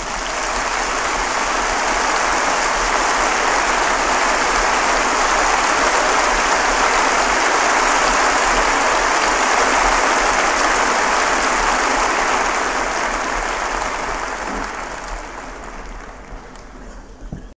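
Audience applauding after the band's final chord, a steady clapping that thins out and fades away over the last few seconds.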